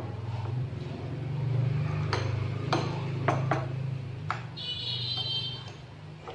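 Utensils clinking against bowls while eating: several sharp clinks, then a brief ringing ping near the end. Underneath is a low steady drone that swells in the middle.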